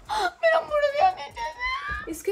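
A girl whimpering and whining in distress, her hand stuck and not coming free; the whine rises in pitch near the end.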